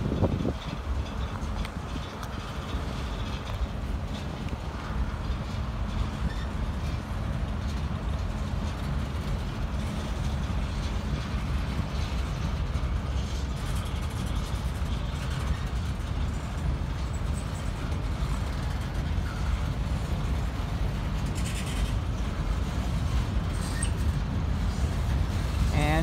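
Freight train boxcars and gondolas rolling past: a steady rumble of steel wheels on rail with occasional clanks.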